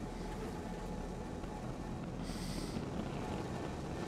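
SpaceX Starship SN15's three Raptor rocket engines at liftoff, a steady, even rumble as the rocket climbs off the pad, heard through the launch video's audio. A brief hiss comes a little past halfway.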